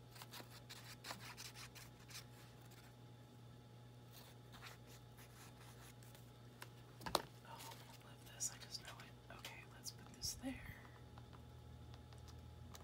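Quiet paper handling while gluing a page: soft rustles and light taps, with one sharp tap about seven seconds in, over a steady low hum.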